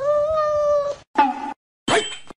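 Domestic cat meowing: one long, level meow lasting about a second, then a short meow, and another beginning near the end.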